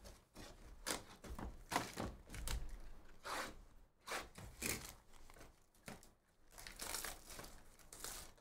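Plastic shrink wrap crinkling and tearing as a sealed box of trading cards is unwrapped, with cardboard boxes being handled, in a string of short, irregular rustles.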